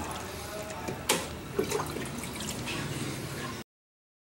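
Water being poured from a clear plastic cup into a plastic basin, splashing and dripping, with a couple of sharper splashes. The sound stops suddenly about three and a half seconds in.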